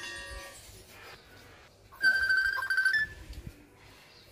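Common hill myna whistling: a short whistled call at the start, then one loud, steady, clear whistle about a second long from about two seconds in, ending in a brief higher note.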